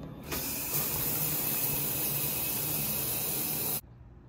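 Shower water spraying after the valve handle is turned on. It starts just after the beginning, grows fuller before a second in, runs steadily and stops abruptly near the end.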